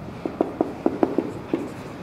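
Marker pen writing on a whiteboard: a quick, uneven run of short taps and scratches, about eight in two seconds, as words are written.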